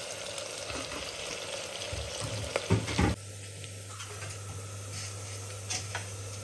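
Sliced onions and garlic sizzling as they fry in hot mustard oil in an open pressure cooker, with a spatula stirring and knocking against the pot a couple of times about three seconds in. A steady low hum joins the sizzle in the second half.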